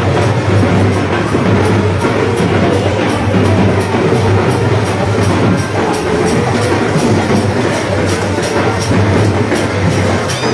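Loud procession music: drums and cymbals played to a steady, fast beat, with other instruments sounding over them.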